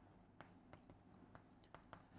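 Near silence, with a few faint taps and scratches of chalk writing on a chalkboard.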